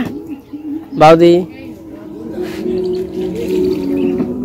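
A person's voice: a short loud call right at the start and another, rising in pitch, about a second in.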